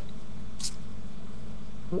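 A small metal cartridge cover sliding off an e-cigarette body: one short, soft scrape about half a second in, over a steady low hum.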